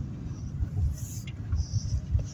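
Low rumble of a car rolling slowly, heard from inside the cabin, with a short hiss about a second in.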